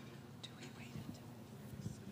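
Faint whispered talk over a low, steady room hum.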